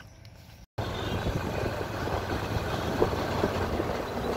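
Steady rumble of a motor vehicle under way, engine hum mixed with road noise, starting abruptly a little under a second in.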